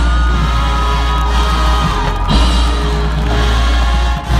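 Marching band playing a held, sustained passage, with brass tones over a heavy low bass.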